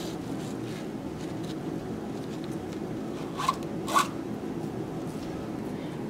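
Nylon webbing strap rubbing and sliding as it is threaded through a metal ring on a stroller's front leg, with two short scrapes about three and a half and four seconds in.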